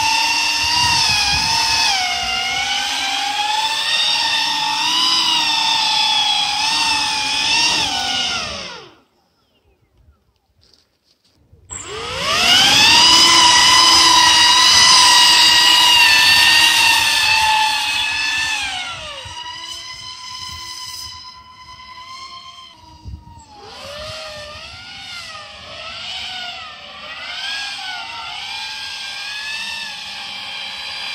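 Electric motors and propellers of a DIY VTOL RC plane in flight: a high whine with many overtones that rises and falls with the throttle. It drops out for about two seconds partway through, returns loud, then falls in pitch and carries on as a quieter, wavering whine while the plane comes down low to land.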